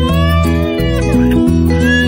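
Background music with steady sustained notes, and over it an infant crying in drawn-out wails that rise and fall in pitch: one long wail, then a shorter one near the end.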